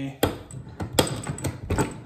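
Knipex pliers wrench ratcheting on a half-inch PVC fitting: several sharp metallic clicks as the jaws slide back around the plastic hex and bite again on each stroke.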